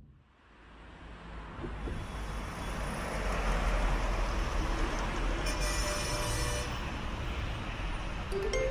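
Steady roar of road traffic, fading in from silence over the first few seconds and then holding steady.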